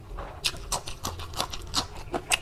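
Close-miked wet chewing: a run of sharp mouth clicks and smacks, about four a second, as food such as a green chili is eaten.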